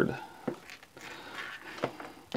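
Two faint clicks from an RC brushless electronic speed control being handled and moved on a cutting mat, over low room tone.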